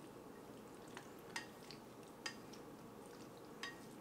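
A few faint, light clicks of wooden chopsticks against a bowl as udon noodles are stirred and lifted, over quiet room tone.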